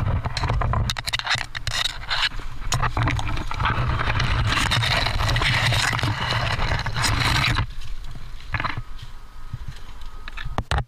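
Leafy branches scraping and rustling right against a helmet-mounted camera as the climber pushes through dense foliage, with knocks and rubs of hands and body on the rock. The close scraping noise runs dense and loud, then drops away fairly suddenly near the end, leaving scattered softer rubs.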